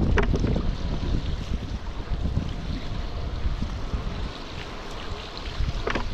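Wind buffeting the microphone in a strong breeze, over the rush and splash of choppy water around a paddle foil board. There are a few sharp splashes right at the start and again just before the end.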